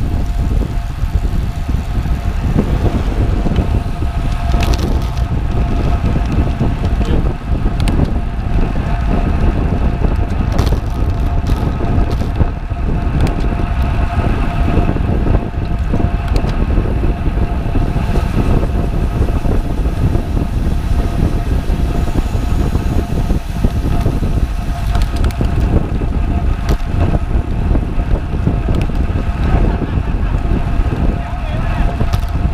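Steady wind rush over an action camera's microphone and tyre noise from a road bike riding fast on asphalt, with a few short knocks scattered through it.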